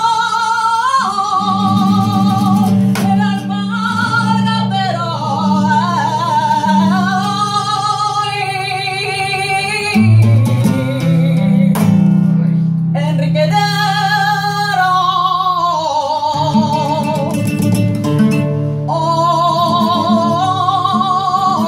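Flamenco cante por cartageneras: a woman's voice holds long, ornamented lines with vibrato over an acoustic flamenco guitar accompaniment. About halfway through the voice falls silent for a few seconds while the guitar carries on, and then the singing resumes.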